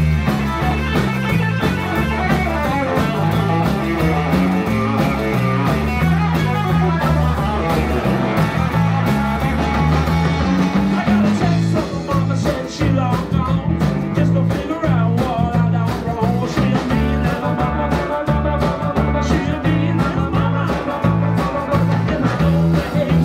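Live blues-rock trio playing: electric guitar over electric bass and drum kit, with a steady beat.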